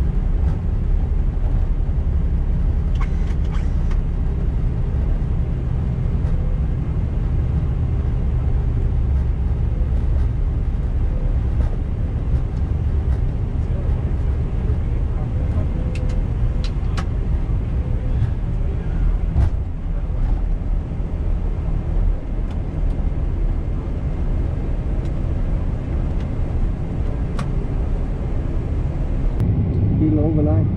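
Airbus A320 flight-deck noise as the airliner rolls along the ground just after landing: a steady low rumble of the engines and airframe, with a few light clicks.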